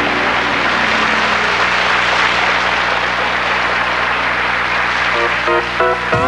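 Studio audience applauding after a country song ends, over low notes held by the band. About five seconds in, a guitar starts a run of notes that leads into the next song.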